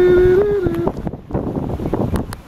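Wind buffeting the microphone, with a steady held tone that steps slightly higher and then cuts off just under a second in.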